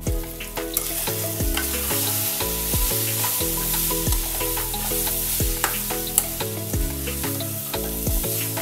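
Onion-tomato masala with chilli powder sizzling in oil while a perforated steel spoon stirs and scrapes it around a stainless steel kadai. Background music with a steady beat plays underneath.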